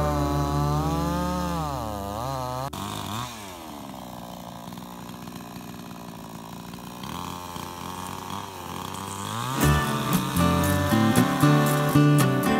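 Cheap Chinese-made two-stroke chainsaw running under load, its engine pitch wavering up and down as it cuts. About three seconds in the sound breaks off abruptly; the engine pitch then falls, stays lower for a few seconds and climbs again. Strummed acoustic guitar music comes in near the end.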